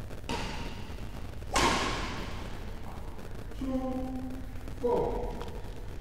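Badminton racket striking a shuttlecock twice, about a quarter second in and again more loudly about a second and a half in, each hit ringing briefly in the hall. Later come two drawn-out squeaks of shoes on the court floor, the second sliding down in pitch.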